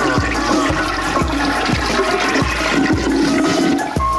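A toilet flushing, laid as a sound effect over a hip-hop beat with a kick drum about twice a second.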